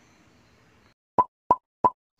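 After about a second of near silence, three short, quick pop sound effects come about a third of a second apart, the kind edited in for an animated heart graphic.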